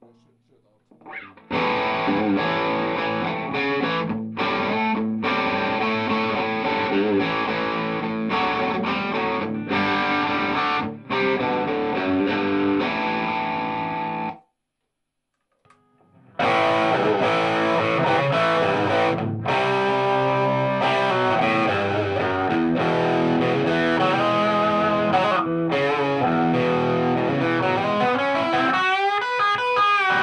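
Electric guitar played through a Fender tube combo amp, in two passages with a pause of about two seconds partway through.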